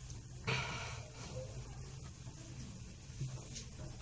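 Faint rustle of dry shredded kataifi pastry being pressed into a small foil tin by hand and with a glass, with one short, louder rustle about half a second in.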